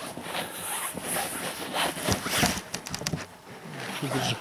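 Irregular rustles, scuffs and light knocks of people moving about and handling things in snow close to a camera that has just been set down.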